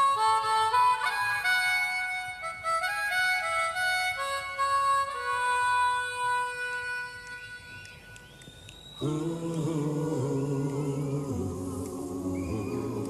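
Harmonica playing a slow, unaccompanied melody of separate held notes, which fades out about seven seconds in. About nine seconds in, a lower sustained chord enters.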